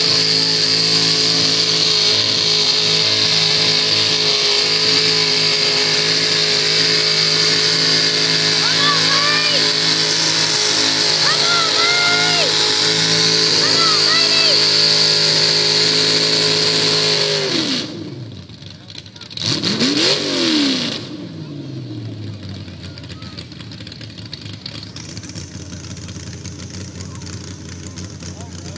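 Mud bog vehicle's engine held at high, steady revs as it ploughs through the mud pit for about seventeen seconds, then dropping off. One quick rev up and back down follows, then a lower idle.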